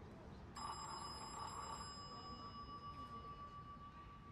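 A sharp metallic ping from a baseball striking metal about half a second in, ringing on as a clear high tone that fades slowly over about four seconds.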